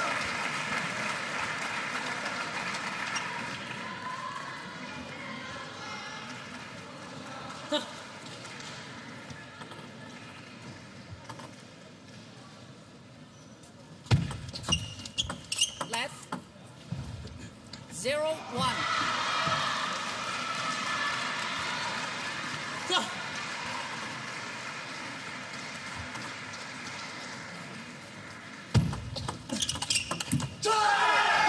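Arena crowd noise fades, then a short table tennis rally sounds about halfway through: the ball clicks off bats and table for about three seconds. A burst of crowd cheering and shouting follows, dying away slowly, and the clicks of another rally begin near the end.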